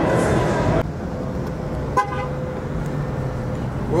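City street traffic noise with a short car horn toot about two seconds in. Under a second in, louder indoor crowd noise cuts off abruptly.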